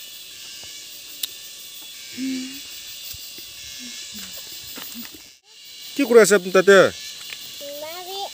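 Steady buzzing of forest insects. A person's voice sounds briefly about two seconds in, and a louder voice calls out with a rising and falling pitch near the end.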